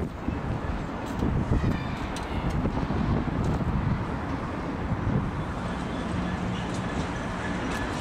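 Light-engine convoy of diesel locomotives, a Class 66 leading three Class 70s and another Class 66, running slowly over pointwork with a low engine rumble. A steady low engine hum comes in about six seconds in.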